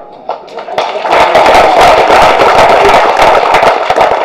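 Audience applauding, starting about a second in and going on steadily.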